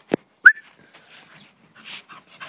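A dog barking: two short barks about a third of a second apart, the second louder and higher-pitched.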